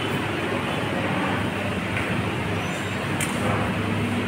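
Steady background din of a busy restaurant dining room, with faint voices murmuring underneath.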